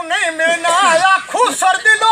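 A man's voice singing alone in long, wavering held notes, without the drums or rattle, in a line of unaccompanied Punjabi folk verse.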